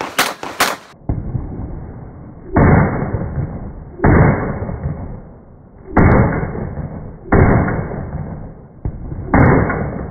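Glock 34 9mm competition pistol firing a USPSA stage: a few sharp shots in the first second, then loud shots about every one and a half seconds. The overloaded recording makes each shot sound muffled, with a long fading tail.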